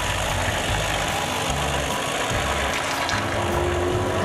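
Immersion blender running steadily, its motor and blade whirring as it purées vegetable soup in a steel pot.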